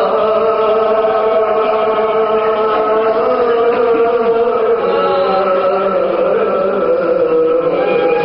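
A man singing a marsiya, a Shia mourning elegy in Urdu, in soz khwani style, holding long drawn-out notes that shift slowly in pitch.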